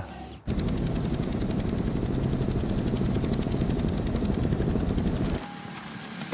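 Rapid automatic gunfire: a dense, steady rattle of shots that starts about half a second in and cuts off sharply near the end.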